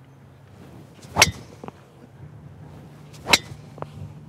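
Two sharp cracks of a driver's clubhead striking a golf ball off the tee, about two seconds apart, each followed by a fainter tick.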